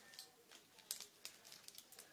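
Aluminium foil crinkling faintly under the hands as it is pressed and moulded, a few soft crackles with the sharpest about a second in.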